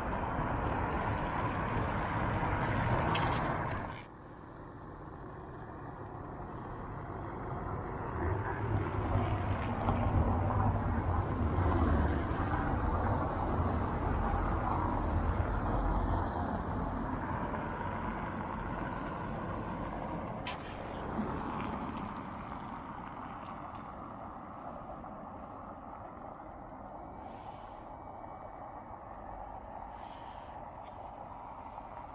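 Passing road traffic: a vehicle's engine and tyre noise on a cobbled road, swelling to its loudest in the middle and then fading away. A steadier traffic noise at the start breaks off suddenly about four seconds in.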